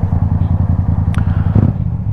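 Motorcycle engine idling steadily, a low even rumble that holds one pitch, with a single brief tick about a second in.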